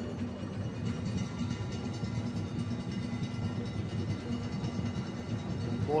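Stadium ambience from the broadcast's field microphones: a steady low background of crowd noise from the stands, with no sudden events.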